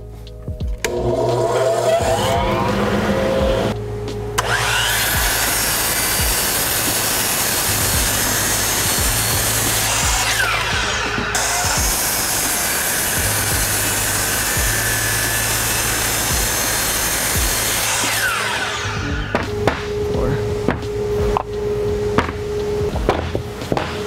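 DeWalt sliding compound miter saw spinning up and cutting through a 4x4 pine post. It runs loud for about fourteen seconds, then winds down, followed by a few clicks and knocks.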